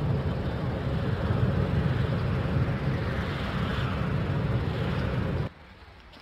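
Steady road and engine rumble inside a moving car's cabin. It cuts off abruptly about five and a half seconds in, leaving faint room tone.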